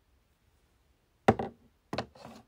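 Two sharp knocks from something being handled and set down, about two-thirds of a second apart, the first the louder.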